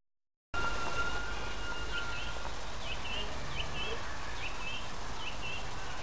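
Outdoor ambience after a brief dropout: steady background noise, with a thin steady tone for the first couple of seconds and then a run of short chirps repeated about twice a second.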